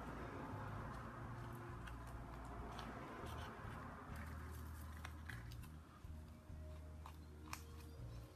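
Marker pen scratching along raised string lines on a sand-textured painted canvas: faint scratchy strokes with a few small clicks, over a low hum.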